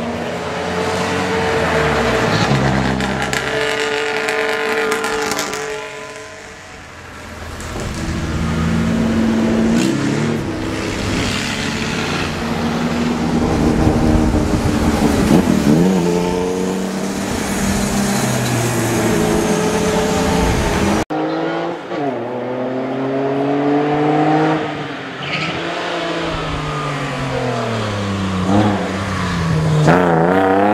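Competition cars accelerating hard past, one after another, their engines revving up and dropping in pitch at each gear change. The sound cuts abruptly about two-thirds of the way through to another car's engine, which keeps rising and falling in pitch as it is driven hard.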